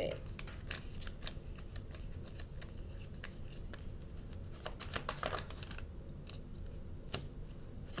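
Tarot cards being shuffled by hand: a run of light, quick card clicks and flutters, thickest near the start and again about five seconds in, over a low steady hum.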